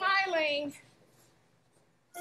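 A person's voice drawing out one word with falling pitch for under a second, then a pause of about a second with only faint room tone.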